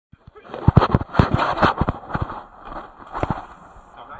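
A rapid run of sharp knocks and clatter, thickest in the first two seconds, with one more knock a little after three seconds.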